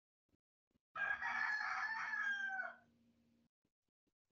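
A single loud, drawn-out animal call, lasting almost two seconds, its pitch falling away at the end. It comes in over a video call with a faint low hum that stops shortly after the call.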